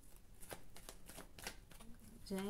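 A deck of tarot cards being shuffled by hand: a soft, quick, irregular series of short card strokes.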